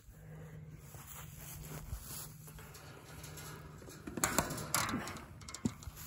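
Electric-fence gate handle and polywire being handled at a fence post: brief rustling and a few clicks about four seconds in, over a faint steady low hum.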